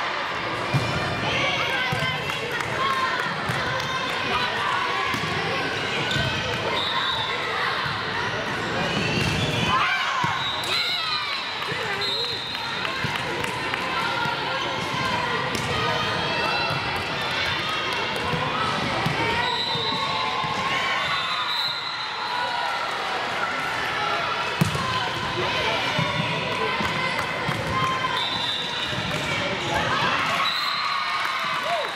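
Volleyball rally in a large gym: the ball struck by hands and hitting the hardwood court in sharp smacks, while players and spectators call out almost continuously.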